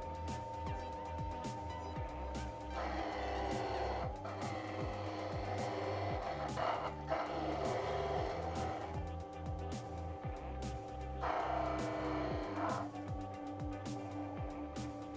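Background music with a steady beat, over a small homemade bench saw running with a steady hum. It cuts wood twice, from about three to nine seconds and again briefly near the end.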